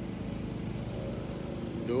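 An engine idling steadily, an even low hum with a fine regular pulse.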